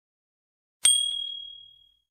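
A single bright notification ding, a subscribe-button sound effect, struck once about a second in and ringing out as it fades over about a second.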